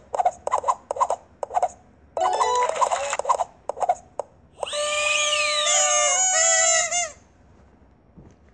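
Sound effects from a mobile memory-matching game. A quick run of short clicks and chiming blips plays as the matched card pairs are laid out. About four and a half seconds in comes a bright celebratory jingle of about two and a half seconds with a rising sweep, the game's win sound for clearing the hardest level.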